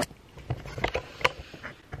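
A few short, irregular knocks and rustles of handling as a handheld camera is moved about, with a sharp click at the start.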